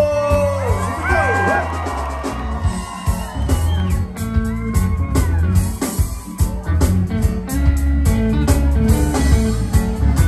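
Live band playing a song: electric bass and drums with a steady hi-hat beat under keyboard and a singing voice.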